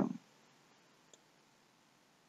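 A single faint computer mouse click in otherwise near-silent room tone.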